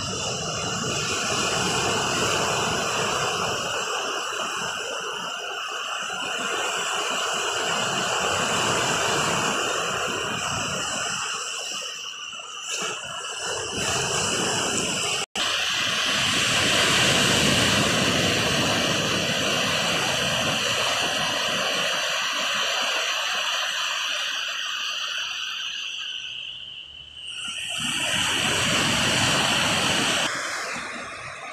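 Small waves breaking and washing up a sandy beach, the rush of surf swelling and easing in slow waves with a brief cut about halfway through. A steady thin high-pitched tone runs underneath.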